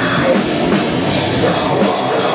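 Heavy metal band playing live: distorted electric guitar, bass guitar and drum kit, loud and dense without a break.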